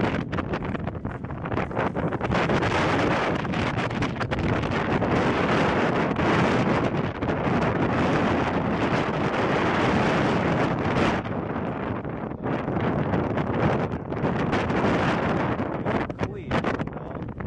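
Wind buffeting the microphone: a steady, rushing noise that eases briefly about eleven seconds in and then picks up again.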